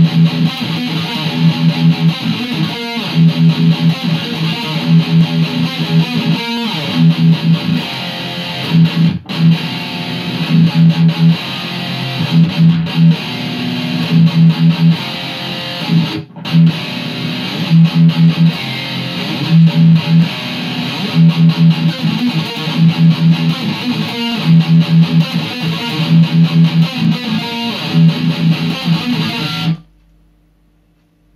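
Electric guitar played through a Line 6 amplifier with a heavy, distorted tone: a dark, rhythmic low riff of repeated chugging notes and power-chord fifths, which cuts off at the end.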